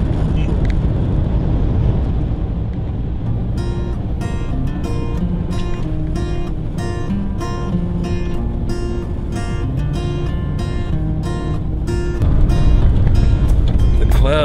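Steady engine and road rumble inside a moving van's cab. Background music made of quickly picked notes comes in a few seconds in and runs over the rumble. The rumble gets louder near the end.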